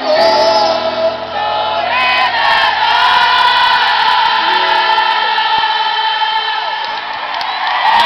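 Live pop music from a stadium concert, with many voices holding long notes together and a large crowd heard along with the band.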